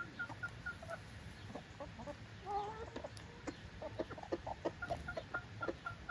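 Chickens foraging and clucking softly, with a longer wavering call about two and a half seconds in and a run of short clucks and clicks in the second half. A steady series of short high peeps, about three a second, runs at the start and comes back near the end.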